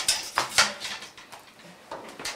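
A few sharp knocks and clatters of classroom chair-desks and books being handled and sat in, the loudest in the first second and another near the end.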